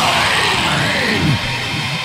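A break in a black metal song: the low pounding drums fall away and several sweeps slide down in pitch over a distorted guitar wash, with the music dipping slightly in loudness near the end.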